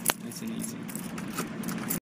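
Low, steady car-cabin rumble with a single sharp click just after the start and a few faint light clinks.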